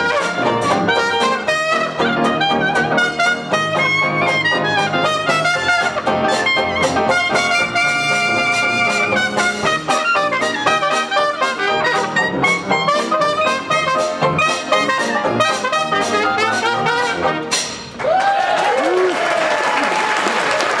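Small traditional hot-jazz band playing full out, a trumpet leading over clarinet, piano and rhythm section, closing on a final note about eighteen seconds in. The audience then breaks into applause and cheers.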